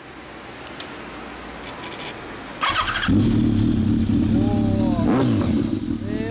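2015 Kawasaki ZRX1200 DAEG inline-four with a BEET aftermarket exhaust being started: the starter cranks briefly about two and a half seconds in, the engine catches, and it settles into a steady idle.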